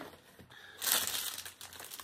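Clear plastic packaging crinkling as it is handled: a short burst about a second in, then lighter crinkles.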